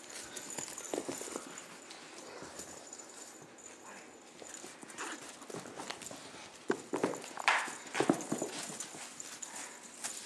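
Kittens scampering and pouncing on carpet: an irregular string of soft thumps and scuffles, busiest a few seconds before the end.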